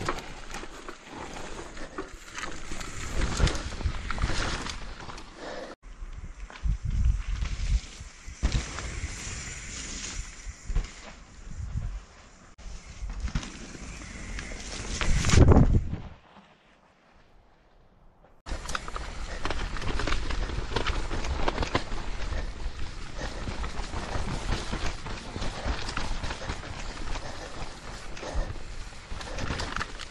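Mountain bike riding down a muddy forest trail: tyre noise over dirt and roots with knocks and rattles from the bike, picked up by a chest-mounted action camera. The sound is broken by abrupt edit cuts, with a loud rush peaking just before a short near-quiet stretch about two-thirds of the way through.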